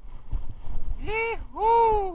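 Two loud, drawn-out calls, each rising and then falling in pitch, starting about a second in, over the low knocking and rattling of a mountain bike riding a rough dirt trail.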